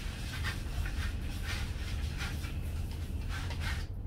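Hand pump pressure sprayer misting insecticide solution onto potted houseplants in a run of short hissing sprays, over a steady low hum.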